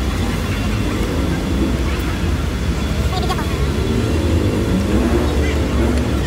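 Busy city street ambience: a steady rumble of traffic with scattered voices of passers-by.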